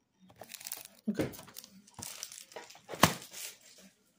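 Plastic wrap crinkling and tearing as a trading-card blaster box is unwrapped and opened, in a run of irregular rustles that are loudest about three seconds in.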